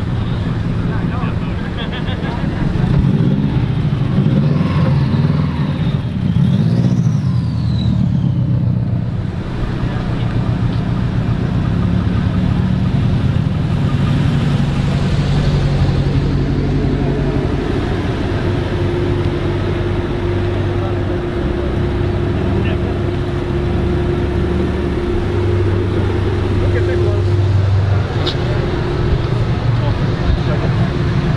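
Car engines running at low speed, a steady low rumble whose pitch rises and falls a few times in the first several seconds before settling into an even idle-like drone.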